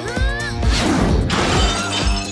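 Cartoon action background music with a steady beat, with a short rising swoosh near the start and a crash sound effect lasting under a second, about three-quarters of a second in, as the hurled container smashes.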